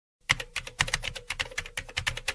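Computer-keyboard typing sound effect: a rapid, uneven run of keystroke clicks, several a second, beginning a moment in.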